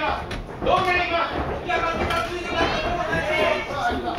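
Several people's voices shouting and calling in a large hall, with a couple of short sharp knocks about half a second in.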